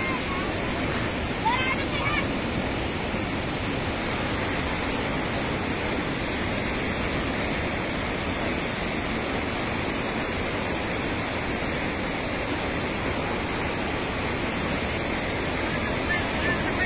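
A flash-flood torrent of muddy water rushing past, a steady, unbroken noise of running water.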